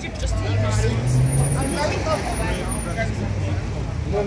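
Street traffic: a vehicle's engine rising in pitch as it accelerates, under the talk of people nearby.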